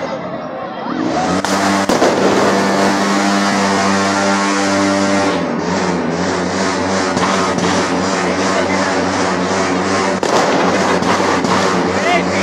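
Loud New Year's night street noise: a steady held tone with overtones, dropping slightly in pitch about five seconds in, over a regular beat, with a few sharp bangs of fireworks.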